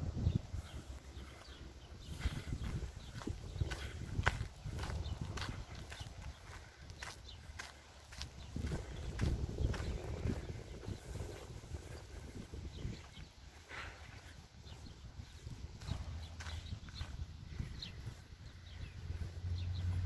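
Horses in a sandy paddock: scattered short clicks and shuffling steps over a low rumble, which turns into a steadier low hum near the end.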